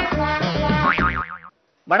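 Upbeat comic title jingle with bass notes and sustained tones, ending about a second in with a wavering, gliding tone; it stops abruptly, and after a short silence a man starts speaking at the very end.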